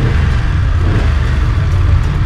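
BMW F 850 GS parallel-twin engine running at low revs, a steady low rumble.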